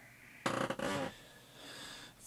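A man's short, breathy, partly voiced exhale while stretching, about half a second in, followed by a fainter breath near the end.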